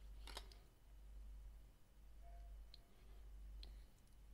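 Near silence with a few faint clicks: a plastic card laid down on a table about a third of a second in, then two light taps as fingers handle a phone with a glass screen protector.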